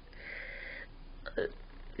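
A woman's tearful breathing while crying: a long breathy intake at the start, then a short catch in the throat about a second and a half in.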